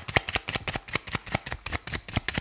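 A deck of tarot cards being shuffled in the hands: a fast, uneven run of soft card clicks and slaps, several a second.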